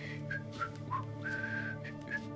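A man whistling a short tune of brief high notes, with one longer held note past the middle, over a soft, steady ambient music drone.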